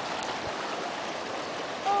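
Seawater washing and swirling into a rocky ocean-fed swimming pool, a steady rushing hiss of surf and foam. A voice starts at the very end.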